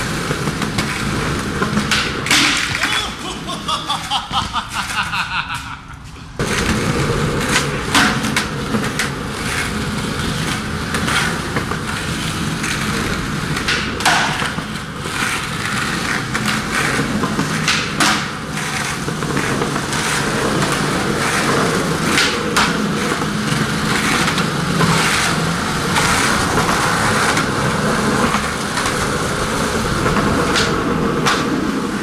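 Skateboard wheels rolling on concrete, a steady rough rumble broken by sharp clacks and knocks of the board. A few seconds in the sound drops quieter for a short stretch, then cuts back in suddenly.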